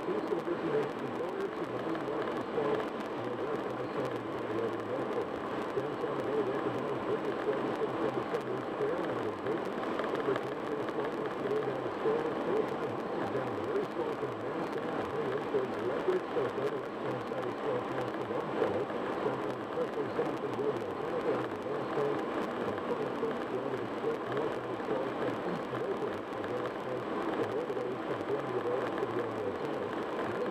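Steady road and engine noise inside a car cruising at highway speed, with faint, indistinct radio talk underneath.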